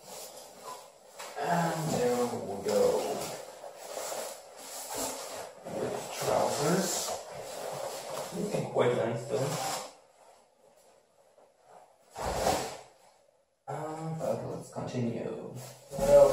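Rustling and crinkling of packaging and a new textile motorcycle jacket being pulled from a cardboard box and handled, in uneven stretches, with a quiet gap about ten seconds in and a short rustle just after it.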